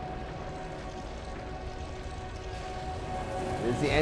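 Soundtrack of a sci-fi TV episode: held music notes over a steady low rumble.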